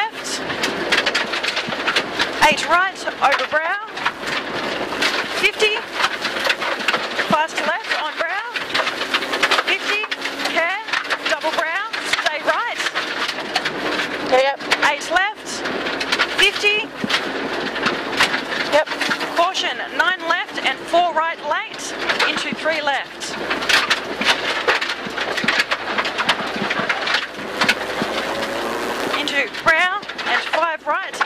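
Rally car heard from inside the cabin at speed on a gravel road: the engine revs rise and fall again and again through gear changes, with stones and gravel clattering against the underbody.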